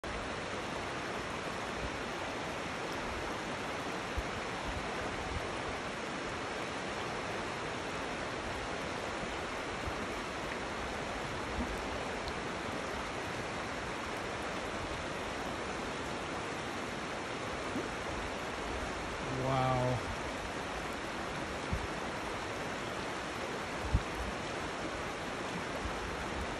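Steady rush of a shallow, rocky river flowing below a dam spillway. About three-quarters of the way through, a person's voice is heard briefly.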